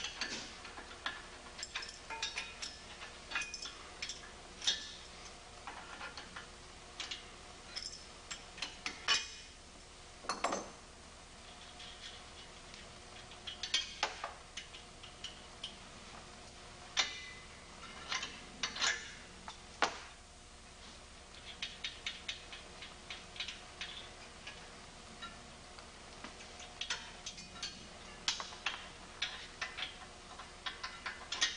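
Hand wrenches working on steel bolts in a steel frame: irregular metallic clicks, clinks and taps as the tools are fitted, turned and repositioned, coming in clusters with short pauses between.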